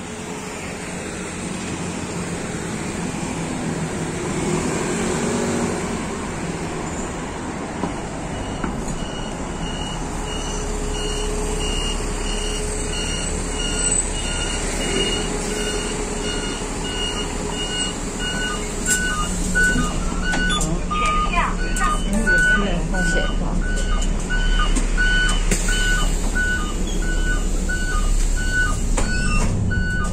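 A diesel city bus pulls up close and idles, its engine growing louder. From about a third of the way in, a steady electronic warning beep repeats about twice a second and runs on to the end, with a short spell of hissing and clatter in between.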